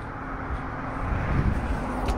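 Road noise from inside a moving car: a steady low rumble of tyres and engine that grows a little louder near the end.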